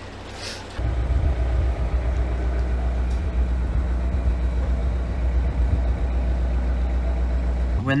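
Narrowboat's diesel engine running steadily, a low hum that starts abruptly about a second in.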